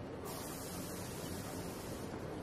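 Jazz quartet of alto saxophone, piano, double bass and drums playing a piece built on the sound of the New York subway: a dense low rumble, with a steady hiss that cuts in suddenly about a quarter-second in and stops near the end.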